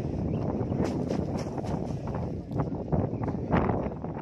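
Wind buffeting the microphone, a steady low rumble with a few short knocks.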